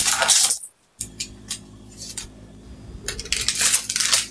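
Kitchen utensils and dishes clinking and scraping at a counter in short noisy bursts, with a faint steady hum between them.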